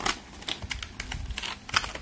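Hands handling a small cardboard box and plastic packaging: a run of irregular sharp clicks and crinkles, the loudest near the end.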